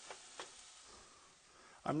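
Faint sizzle of vegetables sautéing in a frying pan, slowly fading, with two light ticks in the first half second.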